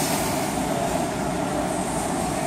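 Steady, loud rushing noise with a low rumble: the background noise of a gym.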